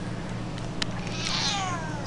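A domestic cat meowing once: a drawn-out call that starts about a second in and falls in pitch.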